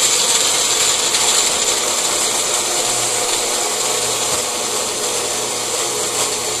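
Magic Bullet personal blender running steadily with its cup held down, blending chopped beets, apple juice and shake powder.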